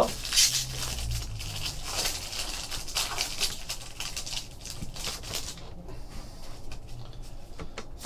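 Foil wrapper of a Panini Threads basketball card pack crinkling as it is torn open and peeled off the cards. The crackling is busiest through the first half and thins to a few light rustles and clicks near the end.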